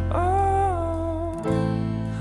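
Background music: acoustic guitar chords under a sung vocal line that holds a long note and then steps down; the chord changes about halfway through.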